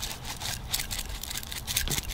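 Crushed red pepper flakes being shaken out onto wood-chip mulch: a dry, irregular patter of light ticks and rustles.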